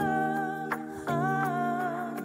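Pop ballad: long wordless vocal notes sung over sustained backing chords, two held notes with a short break between them about a second in.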